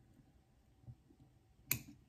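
A single crisp snip of small fly-tying scissors cutting off a tag end at the fly, about three-quarters of the way in, against an otherwise quiet room.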